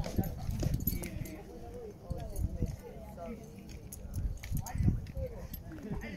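Indistinct voices talking in snatches, mixed with low irregular thumps, the loudest about five seconds in, and a few faint clicks.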